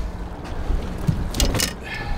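Low wind rumble on the microphone with water against a boat hull. About a second and a half in there is a short burst of rustling and clicks as a fish is handled in a mesh landing net.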